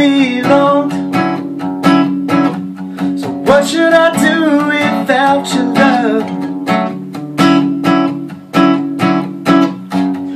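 Capoed Taylor 514ce cutaway acoustic guitar strummed in a steady rhythm with sharp, regular strokes. A sliding, wordless vocal line rises over it around the middle.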